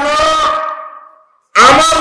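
A man's preaching voice intoning through a public-address system in long, held melodic notes. One drawn-out phrase fades away about a second in, there is a brief pause, and another held phrase starts loudly near the end.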